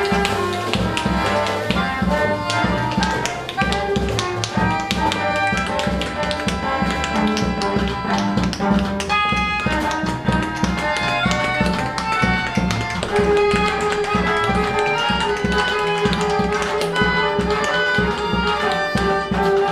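Live improvised group music: bowed cello and melodica over drums and percussive taps, with a held note coming in about two-thirds of the way through.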